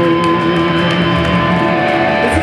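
Live amplified electric guitars holding long, steady, loud notes, with no drums.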